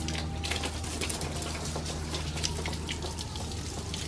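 A stream of water splashing and pattering onto a car's windshield and bodywork, with a steady low hum underneath.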